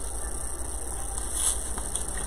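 Steady low hum of room noise with faint rustling of pine greenery being handled, a little louder about one and a half seconds in.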